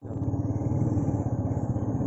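A motor vehicle engine running steadily close by, a low rumble with a fast, even pulse, starting abruptly.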